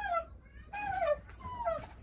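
Three short high-pitched cries, each falling in pitch, one after another.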